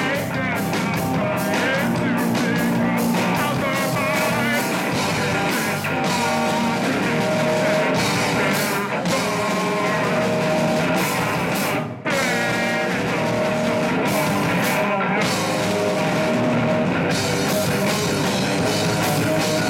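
Hardcore punk band playing live: distorted electric guitar, drum kit and vocals. The music breaks off for a split second about twelve seconds in.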